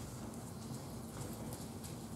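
Quiet room tone with a steady low hum and a few faint soft clicks and rustles of Bible pages being turned.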